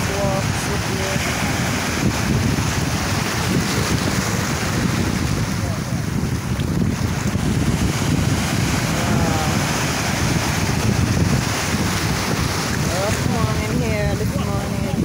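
Steady wind noise buffeting the microphone, with faint voices in the background about nine seconds in and near the end.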